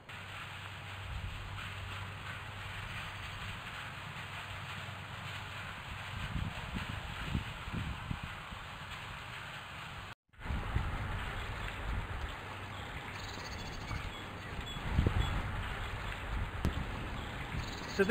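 Outdoor field ambience: wind rumbling on the microphone over a steady hiss. The sound drops out for an instant about ten seconds in, then carries on with stronger wind gusts near the end.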